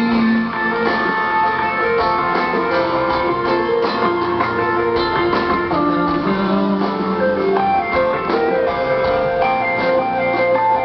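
Live rock band playing: strummed acoustic and electric guitars over bass and drums.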